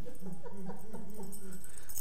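A man's voice whimpering: one long, wavering, wordless moan held for most of two seconds, a frightened child's whimper.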